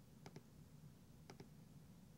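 Faint computer mouse button clicks: a quick press-and-release pair about a quarter second in, then another click about a second later, over a low steady hum.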